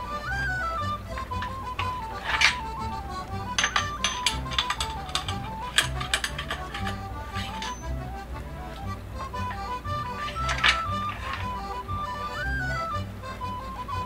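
Metal ramrod clinking against the barrel of a flintlock blunderbuss as a cartridge is rammed down the bore: a scatter of sharp metallic clinks, thickest in the middle and a few more near the end. Background music with a slow single-line tune plays throughout.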